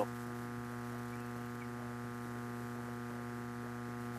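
Steady electrical mains hum in the broadcast audio, one unchanging buzzy tone with a string of overtones.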